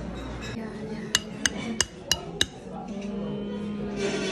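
Metal spoon striking and chipping at hard-frozen tartufo ice cream in a ceramic bowl: five sharp clinks, about three a second, starting about a second in.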